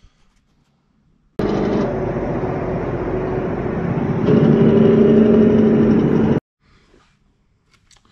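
Semi truck engine running, cutting in sharply about a second in, getting louder partway through, and cutting off sharply about five seconds later.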